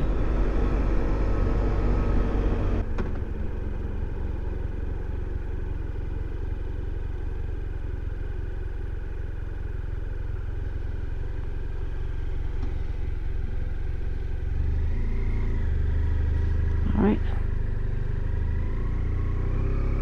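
BMW F700GS parallel-twin motorcycle engine running as the bike rides on. The throttle eases off about three seconds in as the bike slows, and the engine picks up again from about three-quarters of the way through as it speeds up.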